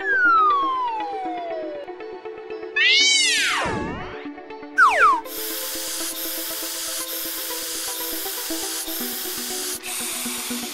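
Cartoon sound effects over light background music: a falling whistle-like glide, then a swoop that rises and falls, then two quick falling chirps. From about halfway through, a spray nozzle hisses steadily, pulsing slightly, as it sprays the truck, and the hiss stops just before the end.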